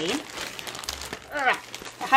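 Plastic poly mailer bag crinkling as it is opened and handled, with a short vocal sound about halfway through.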